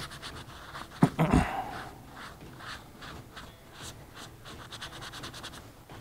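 Foam applicator pad rubbing Crispi waterproofing cream into a leather Hanwag hiking boot, a run of short scratchy strokes, with a louder thump about a second in.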